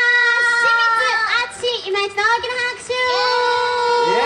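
A woman singing long held high notes without accompaniment, with short wavering slides between them.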